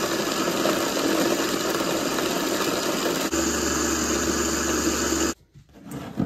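High-speed countertop blender running at full power, grinding dried turkey tail mushroom pieces into a fine powder. Its sound shifts abruptly about three seconds in, and it cuts off suddenly near the end.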